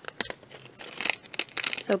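Clear plastic packaging crinkling as it is handled, after a couple of sharp clicks near the start.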